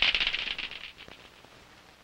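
Klackers, two hard plastic balls on a string, clacking together in a rapid clatter that fades out about a second in.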